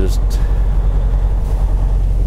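Semi truck's diesel engine and drivetrain droning low and steady, heard from inside the cab as the truck rolls along at low speed.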